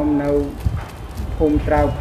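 Speech: a person talking, with a short pause of under a second in the middle before the talk goes on.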